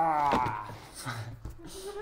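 A man's drawn-out, wavering silly vocal noise, pitched like a bleat, ending about half a second in, followed by softer breathy sounds and a few clicks.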